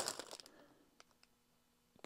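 Plastic LEGO polybag crinkling briefly as it is handled and turned over, then a few faint clicks before it goes quiet.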